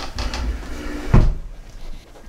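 Handling noise as a plastic handheld capacitance meter with its test leads is set down onto a soft zippered case on a wooden table, with rustling and one dull knock about a second in.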